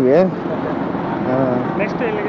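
A bus driving past on the highway close by: a steady rush of engine and tyre noise sets in just after the start and holds.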